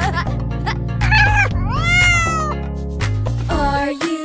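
Background children's music with a cartoon cat meowing: one long call that rises and then falls in pitch, about two seconds in.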